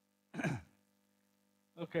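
A short breathy vocal sound from a person, falling in pitch like a sigh, about half a second in, over a faint steady hum.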